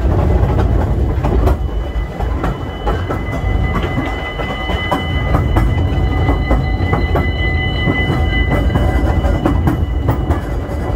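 Narrow-gauge steam train running along its track, heard from an open carriage: a steady low rumble with a run of rail clicks. From about a second and a half in until near the end, a thin, steady high squeal from the wheels on the rail runs over it.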